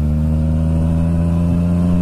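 Yamaha FZ-09's inline three-cylinder engine running at steady revs while the motorcycle cruises, an even drone that holds one pitch.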